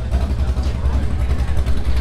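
A car engine running with a steady, low, pulsing rumble.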